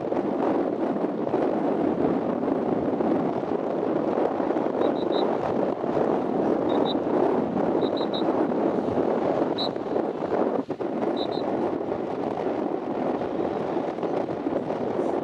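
Wind blowing on the camera microphone: a steady rushing noise with a brief lull about three quarters of the way through. A few faint, short high chirps come in small clusters in the second half.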